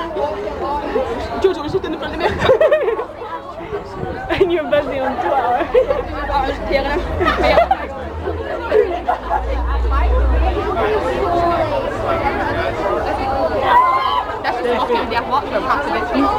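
Crowd of fans chattering close around, many voices overlapping with no single clear speaker. A low rumble comes in about six seconds in and stops about ten seconds in.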